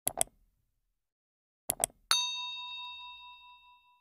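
Two quick double clicks, then a bright bell ding that rings on and fades away over about two seconds. These are the click and notification-bell sound effects of a subscribe-button animation.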